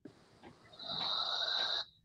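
A breathy exhale into a video-call microphone, about a second long, that cuts off suddenly.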